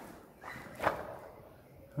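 Footsteps of a person walking, fairly quiet, with one sharper step a little under a second in.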